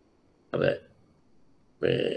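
A man's voice: two short spoken syllables or sounds, one about half a second in and a second starting near the end.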